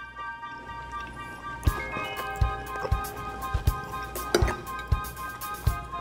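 Background music: held chords, with a beat of low thumps coming in a little under two seconds in.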